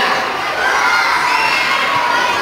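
A crowd of children shouting together in reply, many high voices at once.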